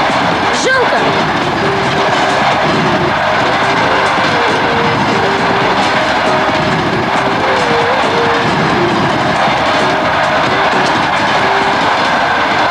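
A train running past: a loud, steady rush of noise with clatter that does not let up, and a faint held tone that comes and goes over it.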